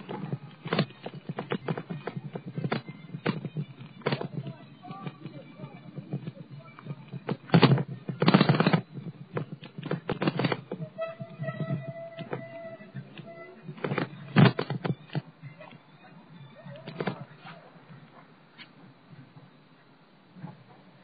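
Irregular knocks, clicks and rattles from a handheld camera on a moving bicycle, with louder rough bumps twice, about eight seconds in and again near fifteen seconds. A steady pitched tone sounds for a couple of seconds in the middle.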